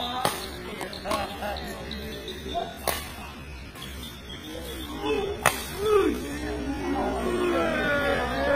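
Badminton racket strikes on a shuttlecock during a doubles rally: three sharp smacks, each about two and a half seconds apart. Voices call out in the second half.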